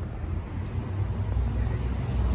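A low, steady rumble of background noise with no distinct events.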